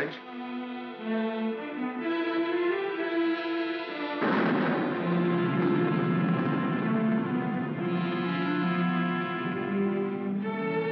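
Orchestral film score with sustained strings. About four seconds in, a louder, fuller passage comes in and carries on to the end.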